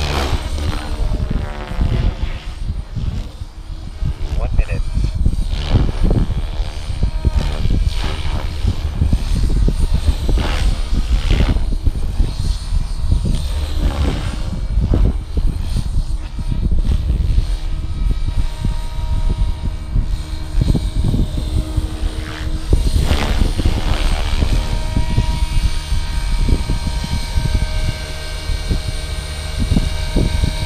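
Electric RC helicopter (Blade Fusion 480 with a 550-size stretch kit) in flight: the rotor and motor whine rises and falls in pitch as it manoeuvres. Wind rumbles on the microphone throughout.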